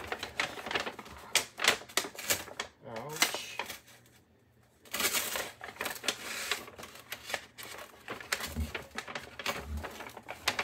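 Brown paper bag rustling and crinkling as it is handled, in quick irregular crackles, with a short pause around the middle.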